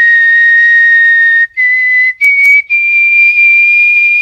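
A person whistling steady, pure held notes of about 2 kHz close to a microphone, in four breaths with short gaps, each note a little higher than the one before.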